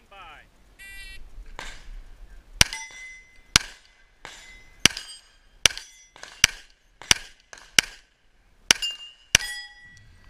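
A short electronic beep, then nine handgun shots spaced roughly a second apart. After several of the shots comes a ringing that fits steel plate targets being hit.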